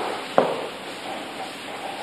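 Chalk writing on a blackboard: two sharp taps of the chalk against the board in the first half second, then softer scratching of the chalk as it moves.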